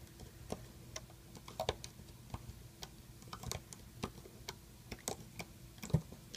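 Irregular light clicks and taps as a hook works rubber bands on the plastic pegs of a Rainbow Loom, looping them up. The clicks come a few a second at uneven spacing, with one sharper click near the end.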